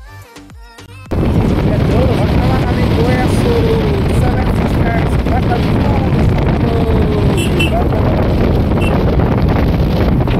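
Loud wind rushing over the microphone of a camera held on a moving motorcycle, mixed with the bike's running and road noise. It cuts in suddenly about a second in, after a short stretch of quiet music.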